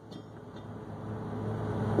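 Low steady hum under a faint hiss that grows gradually louder, with no clear event in it.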